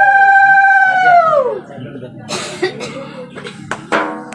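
A conch shell (shankha) blown in one long steady note that bends down in pitch and dies away about a second and a half in. Scattered sharp knocks and clicks follow.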